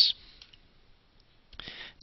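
The last hissing sound of a spoken word, then about a second of near-silent room tone, then a short soft hiss near the end just before speech starts again.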